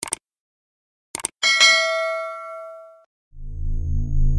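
Sound effects for an animated subscribe button: short mouse clicks, then a bright ding that rings and fades over about a second and a half. A low electronic hum from a logo animation starts near the end.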